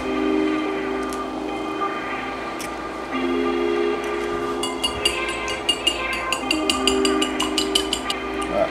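Background music with sustained chords, with a couple of faint knocks as eggs are cracked. From about halfway, a wire whisk beats eggs in a ceramic bowl: quick, even clicks of the whisk against the bowl, about six a second.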